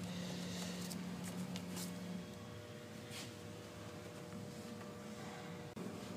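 A steady low hum that stops about two seconds in, with a few faint clicks as a rubber vacuum hose is handled at the engine's air intake.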